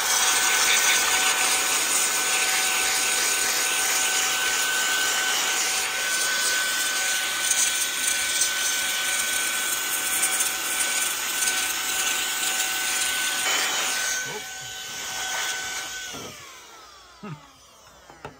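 Cordless electric air duster on its high setting: its high-speed motor whines steadily under a strong rush of air as it blows dust out of a keyboard. The whine steps up in pitch at the start. Near the end the rush of air eases and the motor winds down with a falling whine.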